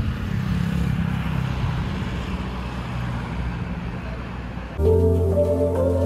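Motorcycle engine running at a steady speed while riding, with wind rumble on the microphone; about five seconds in it cuts abruptly to louder background music with a steady tinkling beat.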